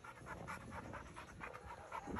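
A black Labrador retriever panting faintly in a quick, even rhythm while walking at heel.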